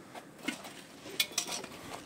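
A few light clicks and clinks over a faint background, several in quick succession a little past a second in.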